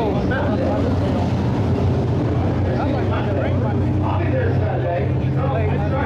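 A steady low drone of race car engines running at a dirt track, under people talking.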